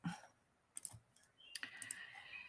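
Faint clicks from a computer keyboard being worked: a couple of clicks about a second in and a quick run of clicks near the end.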